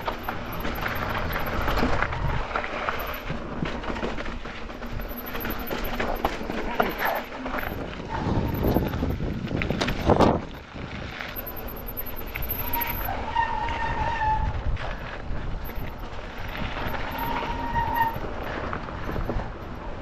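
Mountain bike descending a rough dirt and rock trail, picked up by a chin-mounted GoPro: a continuous rumble and rattle of tyres and bike over the ground, with a sharp knock about ten seconds in and two brief high squeals in the second half.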